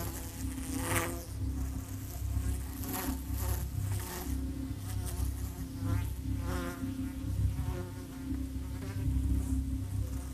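A steady low buzzing hum, insect-like, with a few brief louder sounds over it: about a second in, around three to four seconds in, and around six to seven seconds in.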